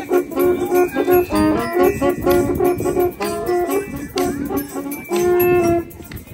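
Live band of saxophones and brass with drums playing an upbeat tune: the horns play a run of short, punchy notes over the drums, then hold one long note near the end.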